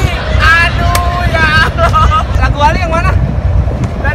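A high-pitched voice in short, bending phrases, over a steady low rumble.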